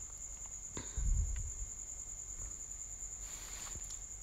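A steady high-pitched trilling tone runs throughout. A few faint clicks and a soft low bump about a second in come from handling a spoon and containers on the countertop.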